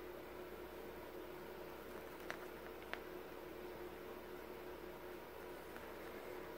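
Quiet room tone with a faint steady hum, and two faint clicks, a little after two seconds and about three seconds in, as hands handle pinned fabric.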